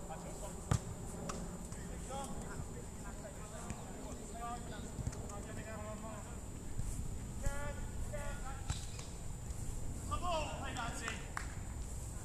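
Players shouting short calls to each other across an outdoor football pitch, several separate shouts through the middle and near the end. A single sharp knock, the loudest sound, comes less than a second in.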